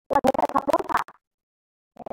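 A short burst of voice, crackling and broken up by clicks, that cuts off to dead silence about a second in.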